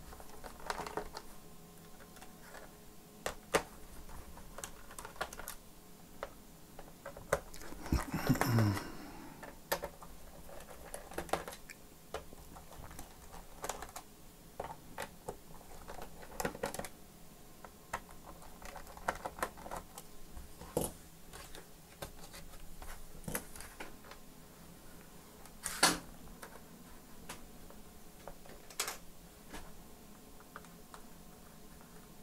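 Scattered light clicks and taps of plastic and a small screwdriver as the bottom cover of a Dell Latitude 5580 laptop is unscrewed and pried off. About eight seconds in there is a louder scrape that falls in pitch, and a single sharp click comes late on.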